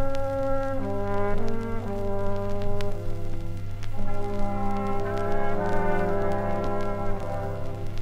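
A cobla wind band playing a sardana from a 1950s 45 rpm vinyl record: brass and reeds hold sustained chords that change every second or so over a steady low bass line.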